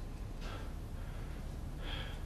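A person's faint breathing over a low steady room hum: a short breath about half a second in and an intake of breath near the end.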